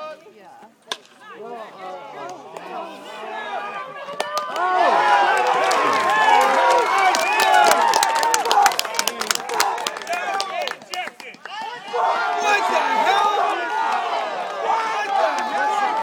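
A single sharp crack about a second in, then a crowd of baseball spectators yelling and cheering, with many voices at once and sharp claps. It swells about four seconds in, dips briefly about eleven seconds in and rises again.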